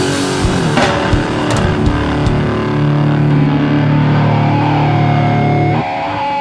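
Hardcore grindcore band playing heavily distorted electric guitar over drums. The drum hits stop about three seconds in, leaving a held, distorted guitar chord. Near the end the chord cuts to a thinner guitar part.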